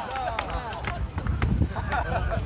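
Short sharp knocks and clatter from armour and rattan weapons as armoured fighters move, with wind rumbling on the microphone.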